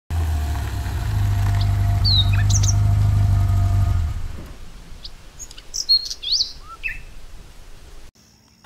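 Birds chirping in short, gliding calls over a vehicle's steady low engine hum, which fades out about four seconds in.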